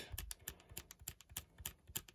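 Nikon DSLR command dial clicking through its detents in a rapid, irregular run of small clicks, stepping the aperture from f/3.5 to f/22.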